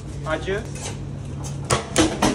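Kitchen sounds: a steady low hum with a brief voice early on, then two sharp knocks near the end.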